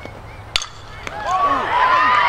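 A single sharp crack of a bat hitting a pitched softball about half a second in, then a crowd starting to yell and cheer as the play develops.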